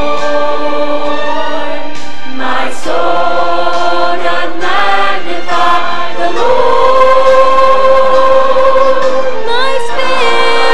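Mixed choir of men and women singing together, with a long held chord from about six seconds in.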